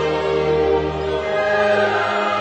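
Opening theme music with a choir singing long held notes; the low bass drops out about one and a half seconds in.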